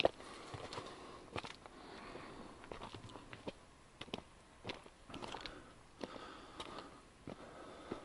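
Footsteps on a loose, stony dirt trail: irregular crunches and clicks of shoes on gravel and rock, about one or two a second.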